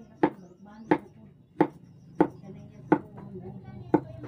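Kitchen knife chopping through peeled root vegetable onto a wooden cutting board: six sharp knocks at an even pace, about one every two-thirds of a second.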